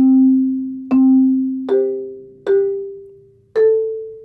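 Malletech five-octave marimba played slowly: five separate mallet strokes, each note ringing out and fading before the next. The first two strokes are on the same low note, the third is a two-note chord, and the last two are on higher notes.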